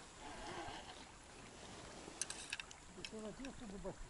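Faint handling noises as a small fish is swung in on a float rod and taken in hand to be unhooked: light rustling, a few sharp clicks about two seconds in, and a quiet murmuring voice near the end.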